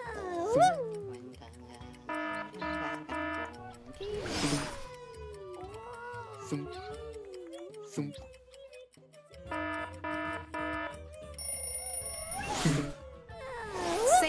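Cartoon game sound effects over music: a squeaky pitched voice sliding up and down, two runs of three quick ringing chimes, and three short loud squeals or giggles, the first the loudest.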